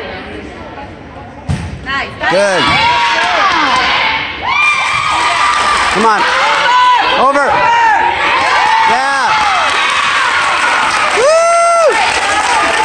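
A volleyball hit with two sharp thumps about a second and a half in, then spectators and players cheering and shouting, many high voices rising and falling, with the loudest shout near the end.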